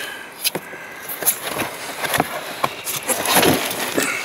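Scattered knocks, clicks and rustling from things being handled in a car's boot: the boot carpet being moved, with a denser rustle about three and a half seconds in.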